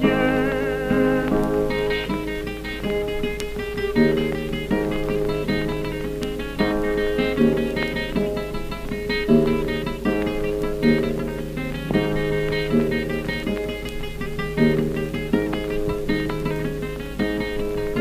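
Instrumental break of a 1930 Greek popular song recording: plucked string instruments play rhythmic strummed chords over a steady bass line, with a constant low hum from the old recording underneath.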